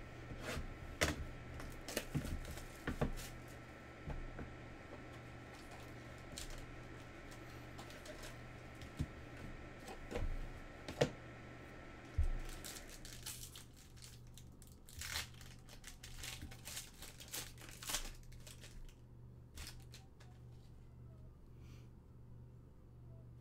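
Foil trading-card packs being torn open and crinkled by hand, with scattered sharp rustles and clicks of cardboard and cards being handled. A faint steady hum underneath drops away a little past halfway.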